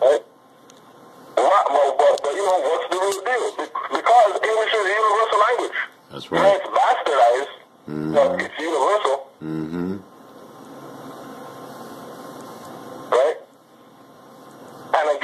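Talking in several phrases broken by short pauses, then about three seconds of steady hiss and a brief spoken sound near the end.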